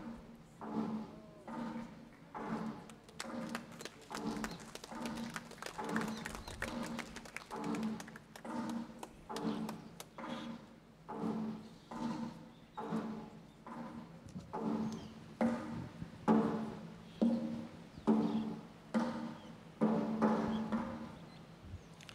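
A pitched drum beaten in a slow, steady processional rhythm, a little over one stroke a second, each stroke ringing briefly; the strokes grow louder over the last few seconds.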